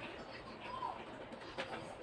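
Faint short bird calls, a few brief arching chirps, with a sharp click about one and a half seconds in.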